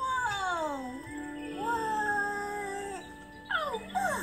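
Cartoon soundtrack playing from a TV speaker: background music under a character's wordless voice, which falls in a long glide over the first second and then holds a steady note. Quick falling squeaks come near the end.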